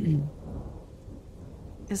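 A steady low rumbling noise with a light hiss fills a short pause between bits of speech.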